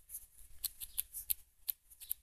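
A run of faint, quick clicks and rustles, about eight to ten in two seconds, sharp and high-pitched.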